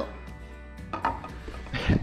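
A steel hand file set down on a wooden block, a faint knock about a second in, over quiet background music.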